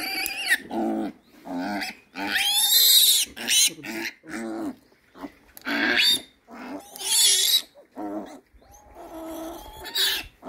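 One-day-old piglet squealing over and over while its needle teeth are clipped, a string of short calls broken by two long, shrill squeals about three and seven seconds in.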